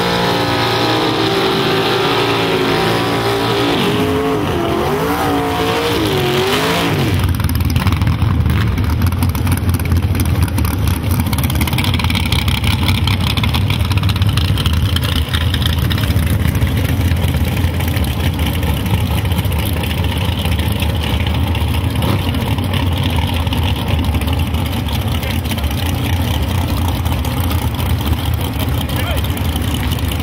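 Crowd shouting and cheering for the first seven seconds or so. Then a small-block V8 drag car's engine takes over close by, running at a loud, deep idle with rapid, even firing pulses.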